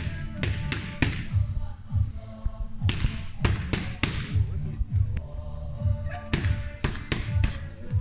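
Boxing gloves striking focus mitts in three quick combinations of several punches each, over background music with a steady beat.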